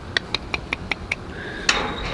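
A quick, even run of sharp, slightly ringing clicks, about five a second, that stops a little past one second in. A short, louder burst of hiss follows near the end.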